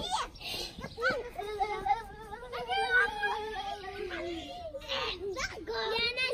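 Young children's voices at play: shouts and squeals, with one high, wavering voice held in a long drawn-out call through the middle.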